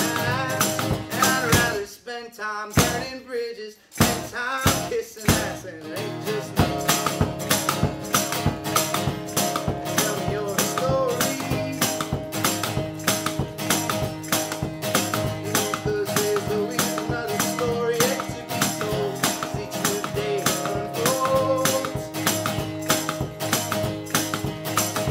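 Live solo folk performance: acoustic guitar strummed over a steady percussive beat from a foot-played suitcase kick drum, with a melody line on top. The playing drops away briefly about two seconds in and builds back to full about six seconds in.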